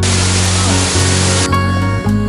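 Background music, with the rushing noise of a waterfall over it for about a second and a half, cutting off suddenly while the music plays on.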